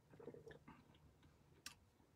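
Faint mouth sounds of a person tasting a sip of hot coffee, with a short sharp click near the end.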